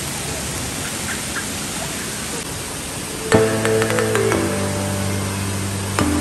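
Steady rush of water running down an indoor water slide. About three seconds in, louder background music with held chords and light percussion comes in over it.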